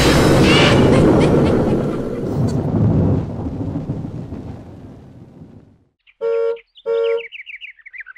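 A loud noisy wash fades away over the first six seconds. Then a cartoon car horn honks twice in quick succession, followed by rapid twittering bird chirps near the end.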